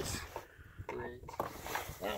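Quiet stretch with a few brief, low snatches of a man's voice; no tool is heard running.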